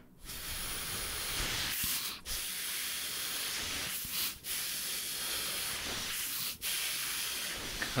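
A man blows a steady hiss of air out through pursed lips, demonstrating circular breathing: air held in his puffed cheeks is pushed out while he breathes in through his nose, so the stream barely stops. It is broken only by three very short dips about two seconds apart.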